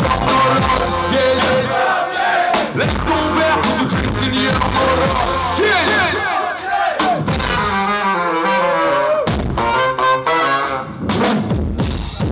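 Live brass band (fanfare) playing uptempo ska: saxophones, trumpet and sousaphone over a bass drum and drum kit, with a steady drum beat.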